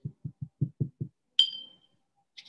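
A paintbrush knocking against a glass water jar: six quick soft taps, about five a second, then a single clink with a brief high ring.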